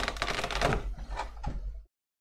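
Clear plastic blister packaging crackling and clicking as it is handled and pulled open, a rapid run of sharp clicks that cuts off just before the end.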